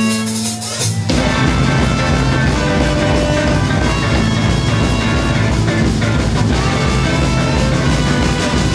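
Band music: a held brass chord breaks off about a second in, and the full band comes in with drums and plays on at a steady beat.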